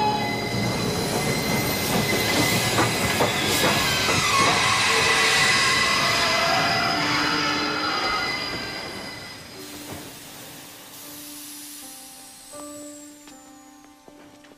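Steam train pulling into a station: a loud rush of steam with high squealing from the wheels and brakes, including one falling squeal about four seconds in. It fades away from about eight seconds in, leaving faint held tones.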